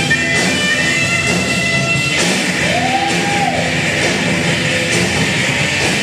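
Rock band playing: electric guitars and drums. Held high notes sound over the first two seconds, then a note slides up and back down about halfway through.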